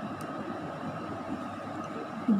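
Steady low room noise with a faint rumble and hiss and a thin steady tone above it. No distinct sound event stands out.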